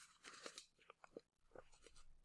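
Near silence, with a few faint, short mouth clicks and lip smacks between sentences of reading aloud.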